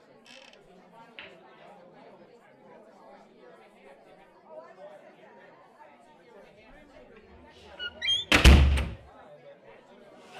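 Low murmur of voices, then about eight seconds in one loud, sudden heavy thud, like a door slamming.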